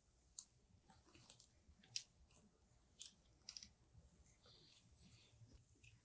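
Near silence, with a few faint, scattered small clicks from hands handling a spool of welding wire and threading the wire into a spool gun.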